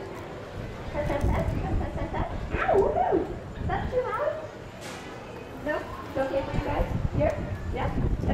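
Indistinct voices of people nearby, coming and going in short stretches, over a low rumble.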